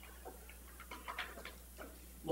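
A low steady hum with a few faint, scattered clicks.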